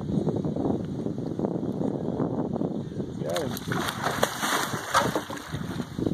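An alligator gar thrashing and splashing at the water's surface beside a boat, with wind noise on the microphone. A voice calls out briefly about halfway through.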